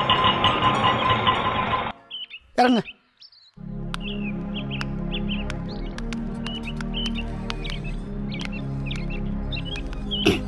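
Film soundtrack: background music that cuts off about two seconds in, a short sweeping glide in a brief near-silent gap, then a low steady drone under bird chirps and light ticks.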